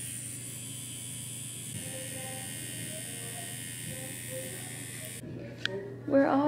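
Tattoo machine running steadily with a low hum while tattooing the skin behind the ear, with faint music in the background. The sound stops abruptly about five seconds in, and a single click follows.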